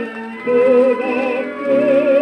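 An old orchestral recording of a Polish Christmas carol playing from a 78 rpm shellac record. A held note with wide vibrato comes in about half a second in over the orchestra.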